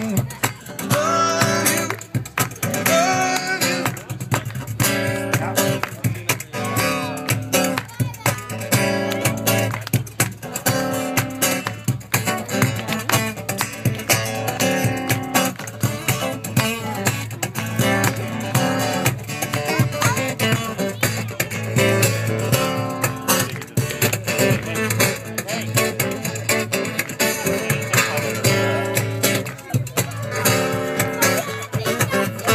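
Acoustic guitar playing strummed chords in a steady rhythm, in a live duo performance.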